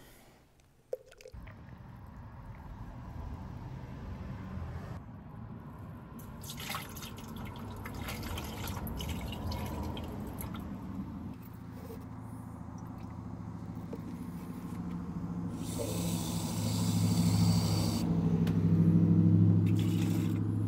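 Herbicide concentrate being poured from its plastic jug into a plastic measuring cup, then from the cup into a backpack sprayer tank already half full of water. The pouring goes on without a break and grows louder toward the end.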